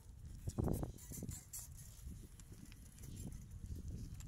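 Footsteps and phone-handling noise from someone walking along a concrete sidewalk while filming, with an irregular low rumble and a louder thump about half a second in.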